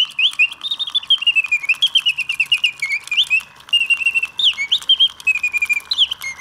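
Late-1800s Bontems singing bird box automaton singing: its bellows-blown piston whistle plays a quick run of chirps, trills and rising and falling whistled notes, with the song ending at the very end.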